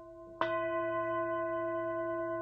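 A singing bowl is struck about half a second in and rings on with a steady tone and several overtones. A faint ring is already sounding before the strike.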